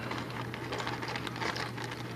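Small electronic components tipped from a plastic bag, ticking and rattling lightly onto a stone countertop as the bag crinkles.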